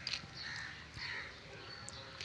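Faint, harsh bird calls, the cawing of crows, repeated about every half second.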